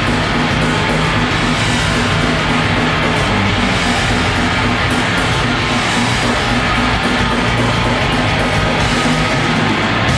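Death metal band playing live: heavily distorted electric guitars and drums, loud and dense without a break.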